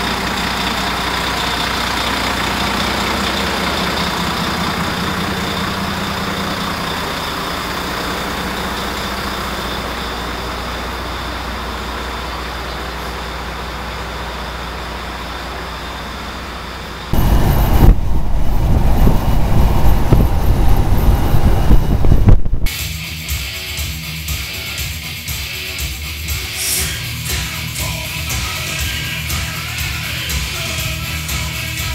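Volvo semi-truck's diesel engine running steadily, much louder for about five seconds past the middle. Music takes over for the last several seconds.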